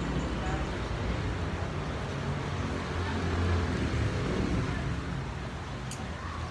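Steady low rumble of outdoor background noise, swelling a little around the middle, with the character of road traffic.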